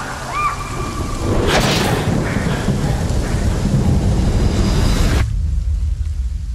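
Thunderstorm: a sharp thunder crack about a second and a half in, then heavy rain over a deep rumble. The rain cuts off suddenly near the end, leaving the low rumble.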